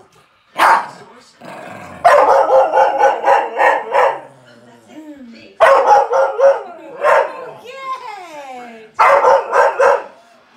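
Dogs barking and yapping at each other in several quick runs, with falling whining cries between them.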